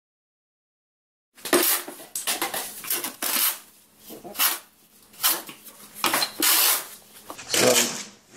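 A metal trowel scraping and turning a sand-cement mud bed mix (Mapei 4-to-1) against the side of a metal mixing tub, in about seven separate gritty strokes. It starts about a second and a half in, after silence.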